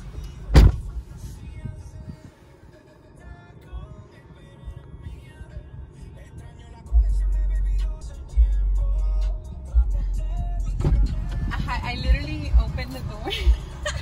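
A car door slams shut with a loud thud about half a second in, and later thuds again. In between, music plays quietly, with a loud low rumble from about seven to nine and a half seconds.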